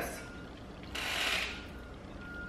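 A fork scraping and scooping food in a black plastic takeout bowl, with one longer scrape about a second in.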